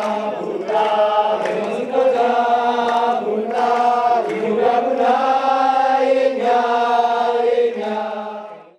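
A group of football supporters chanting a song in unison. It comes in repeated phrases of held notes about a second long, over a steady low note.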